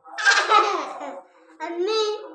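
A young child laughing loudly, a high-pitched burst of laughter followed by a second laugh about a second and a half in.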